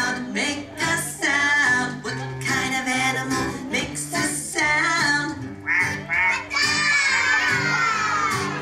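Young children and an adult singing a song together over a guitar accompaniment. Near the end a long high-pitched voice slides downward in pitch.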